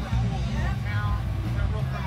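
Voices talking over loud music with a heavy, steady bass.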